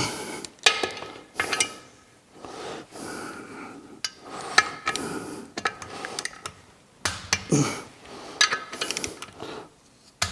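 Torque wrench and socket tightening clutch pressure-plate bolts to 35 foot-pounds: a string of sharp metallic clicks and clinks with brief ringing, spaced out over several seconds.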